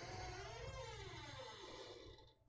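Faint electronic tone that glides up and then back down, fading away by about halfway: a slide-transition sound effect.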